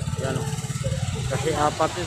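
A vehicle engine idling close by, a steady low pulsing rumble, with people talking over it.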